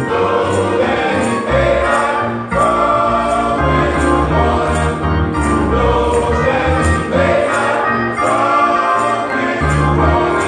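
A men's gospel choir singing in harmony over deep bass notes, with a steady beat ticking about twice a second.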